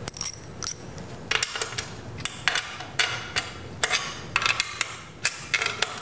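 Clamps on a kingpin and upright rig being cranked down by hand to hold the caster angle so it doesn't slip: an irregular run of clicks and clinks, about three a second, some of them ringing briefly.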